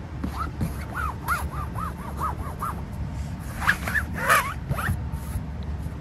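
Inflatable kayak's PVC skin being rubbed by hand, squeaking: a quick run of short squeaks that each rise and fall in pitch, then a few louder, rougher squeaks about two thirds of the way through.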